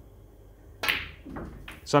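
A snooker shot played as a deep screw on the black: a single sharp click of cue and cue ball meeting the black, a little under a second in, followed by a softer knock.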